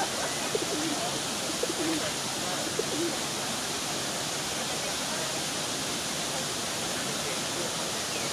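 Small waterfall rushing steadily, with a few short, low calls in the first three seconds.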